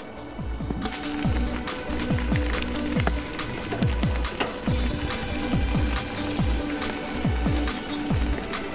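Background music with a steady beat and deep bass drum hits that fall in pitch, about two a second, over held synth notes.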